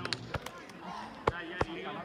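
A football kicked and bouncing on artificial turf: a few sharp thuds, the loudest two just over a second in. Players' voices and shouts can be heard in the background.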